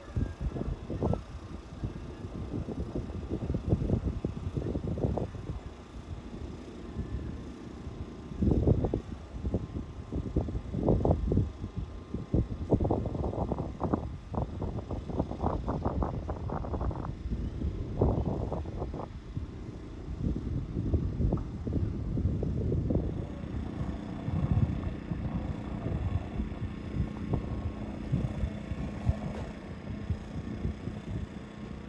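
Wind buffeting the microphone in irregular low rumbling gusts. A steady low hum joins in during the last several seconds.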